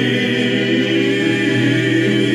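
A group of men singing together in harmony, holding one long sustained chord.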